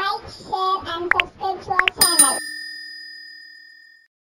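Subscribe-button animation sound effects: a short high-pitched voice with two quick pops, then a single bell ding about two seconds in that rings on and fades out.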